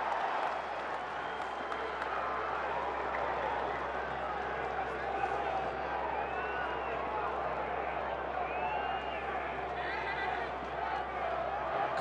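Ballpark crowd noise: a steady murmur of many fans with some clapping and a few scattered shouts.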